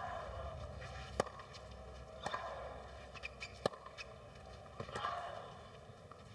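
Quiet stadium crowd murmur with a few sharp, separate knocks about a second or more apart: a tennis ball being bounced on the clay court by the server before her serve.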